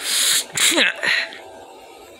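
A person's breathy, straining effort sounds, as if lifting something heavy: a hiss of breath, then a short grunt falling in pitch about half a second in, dying away after about a second and a half.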